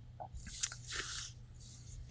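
Faint mouth sounds close to the microphone, with a short hiss of breath and a small click about half a second in, during a pause in talk.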